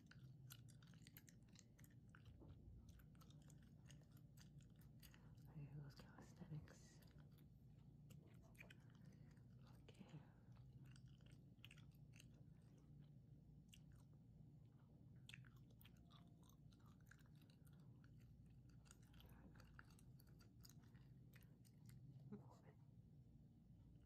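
Faint gum chewing close to the microphone: a steady run of small wet clicks and smacks, a little louder about six seconds in.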